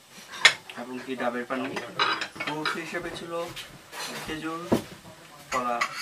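Tableware clinking: glasses, plates and cutlery being handled on a wooden table, with a sharp clink about half a second in and another just before the five-second mark. Voices talk quietly underneath.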